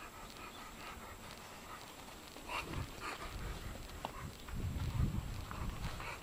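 Pit bulls playing close by: quiet at first, then irregular dog breathing and scuffling sounds from about two and a half seconds in, loudest around five seconds.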